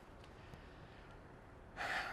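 Quiet room tone, then a man's short intake of breath near the end, just before he speaks again.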